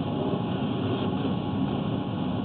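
A steady, unbroken machine drone with a low rumble, at an even level throughout.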